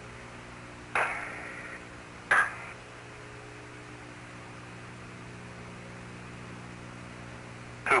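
Steady hiss and low hum of the Apollo 16 lunar-surface radio downlink, broken twice early on by short bursts of radio transmission: one about a second in lasting nearly a second, a shorter one near two and a half seconds.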